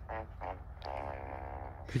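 A man's short, steady low voice sound, held for just under a second in the middle, over a faint low rumble.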